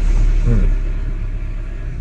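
Safari vehicle's engine giving a loud, steady low rumble that starts abruptly, with a short falling tone about half a second in.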